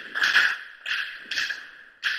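Gunfire: several sharp shots in quick, irregular succession, each with a short echoing tail.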